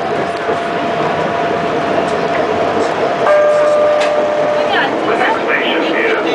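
Bombardier Innovia Metro Mark 1 (ICTS) People Mover train running along its elevated guideway: a steady rolling rumble with a thin steady whine from its linear-induction drive. Just past the middle a second, stronger steady tone sounds for about a second and a half, then stops.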